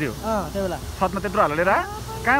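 A person's voice, its pitch swinging widely up and down in short phrases, over a steady low rumble.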